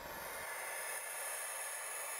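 A steady, even hiss with a faint high whine riding on it.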